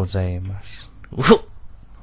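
A cartoon character's voice: a short drawn-out voiced sound, a brief breathy noise, then one short, sharp cry about a second in, the loudest moment.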